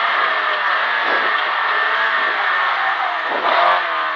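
Rally car engine and road noise heard from inside the cabin. The engine note drops sharply in loudness at the start, then runs steadily with small shifts in pitch.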